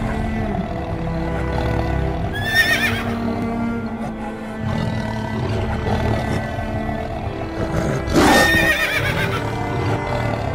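Music with a steady sustained backing, over which a horse whinnies twice, once about two and a half seconds in and again about eight seconds in, each a short wavering call.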